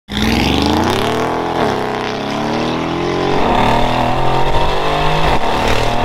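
Mercedes-AMG G63's twin-turbo V8, breathing through a full Quicksilver exhaust with decat pipes on a stage 2 tune, accelerating hard. The engine pitch climbs, drops as it shifts up about one and a half seconds in and again about three and a half seconds in, then climbs again.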